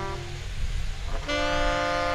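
Valve trombone holds a note that stops just after the start, then comes back about a second in on a new, lower held note, over a jazz rhythm section of double bass and drums.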